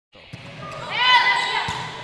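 Court sound of an indoor volleyball rally: shoes squeaking on the hard court, rising about halfway in, and a ball knock near the end. It follows a brief dropout where the background music cuts off.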